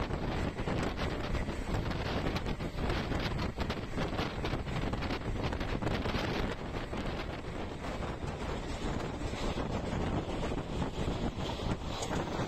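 Wind rushing over the microphone from a moving passenger train, mixed with the train's steady running noise on the track.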